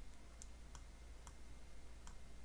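Faint light clicks of a stylus tapping on a tablet screen while handwriting, three small ticks over a low steady hum.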